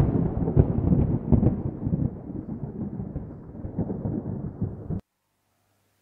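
Thunder sound effect: a sudden loud clap, then a rolling rumble with a few sharper cracks that slowly dies down and cuts off abruptly about five seconds in.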